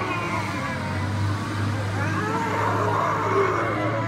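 City street noise with a steady low hum from a large city bus standing at the curb, its engine running.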